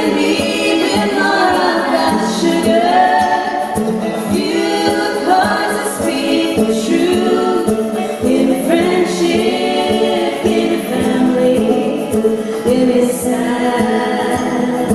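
Women's voices singing a song live in close harmony, several sung lines moving together phrase by phrase.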